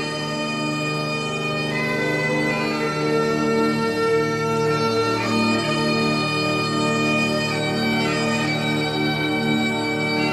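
Bagpipes playing a slow melody over a steady drone.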